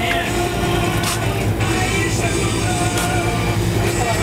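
Music playing on a radio over the steady low drone of the boat's engine.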